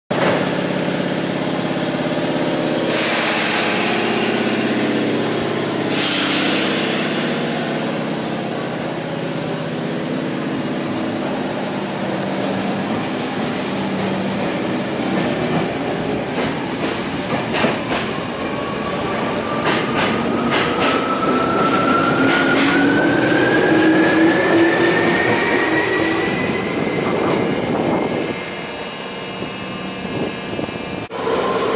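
Electric commuter train pulling away from the platform: its motor whine climbs steadily in pitch over about ten seconds as it gathers speed, with wheel clicks over the rail joints as it starts moving. Two short hisses come in the first few seconds.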